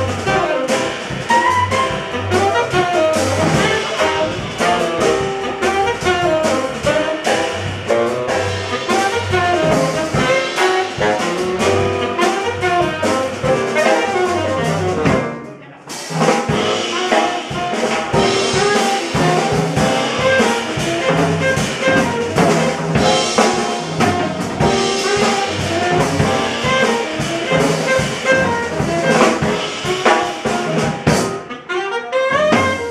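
Live small-group jazz: a tenor saxophone leads over piano, double bass and drum kit. The sound briefly drops away about halfway through, and after that the saxophone rests while the rhythm section plays on.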